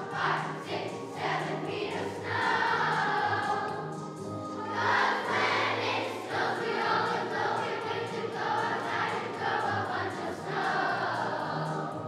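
Children's choir singing a song over an accompaniment with a steady beat, holding long notes through much of it.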